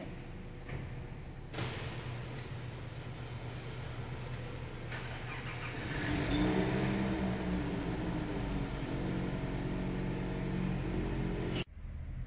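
Car engine running at a low idle, then revving and pulling away from about six seconds in, louder and rising in pitch. It cuts off sharply just before the end.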